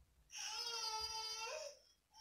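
A baby crying: one long cry held at a steady high pitch for about a second and a half.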